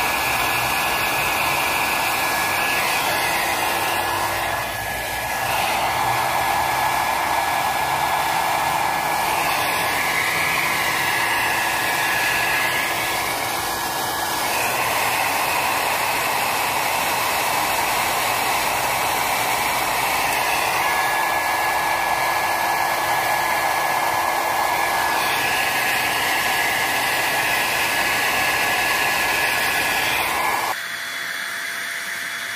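HuanKwun handheld hair dryer running steadily, blowing hot air onto a vinyl decal to soften its adhesive for peeling, with a steady whine over the rush of air. The sound shifts briefly a few times as the dryer is moved.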